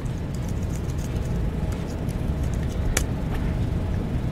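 Steady low room rumble with faint scattered clicks and one sharper click about three seconds in, typical of laptop keys being typed and a command entered.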